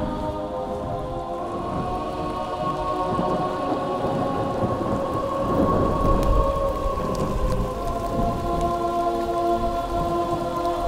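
Steady rain with a rumble of thunder that swells about halfway through, under soundtrack music with long held chords.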